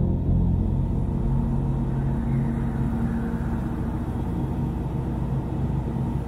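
Deep, steady rumble with sustained low tones under it, slowly easing in level: the closing sound design of a car advert.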